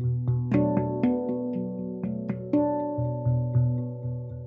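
Handpan played by two people at once: struck steel notes that ring on over a low note pulsing again and again, with a flurry of sharper strikes about half a second in and another about two and a half seconds in.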